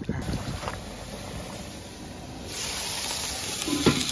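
Wind rumbling on the microphone, then about two and a half seconds in a steady, bright hiss takes over.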